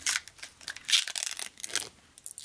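Clear protective plastic film being peeled off a chrome humbucker pickup cover: scratchy crinkling and tearing in a few short, irregular bursts.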